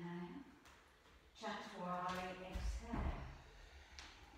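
A woman's voice calls out two long, drawn-out words. Near the end of the second, about three seconds in, there is a dull low thud as a body lands on a yoga mat.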